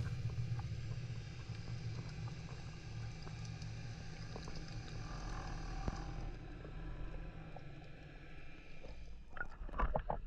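Underwater ambience heard through a diving camera: a steady low rumble with scattered faint clicks. Near the end there is splashing and sloshing as the camera breaks the water's surface.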